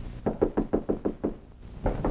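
Knuckles rapping quickly on a door, a run of about eight fast knocks followed by one more near the end.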